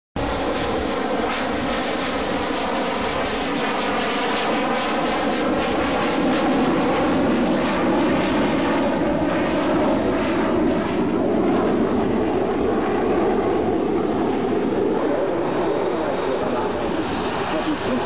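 The two over-wing Rolls-Royce/SNECMA M45H turbofans of a VFW-Fokker 614 twin-jet running steadily as the aircraft rolls along the runway. The sound is a loud, even jet noise whose tone sweeps slowly as the aircraft moves nearer.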